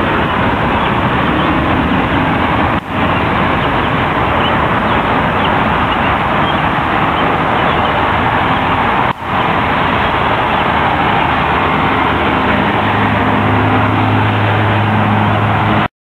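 Loud, steady rush of road traffic, breaking off briefly twice, with a low engine hum coming in over it for the last few seconds.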